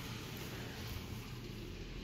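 Steady low rumble and hiss of background noise, with no distinct knocks or clicks.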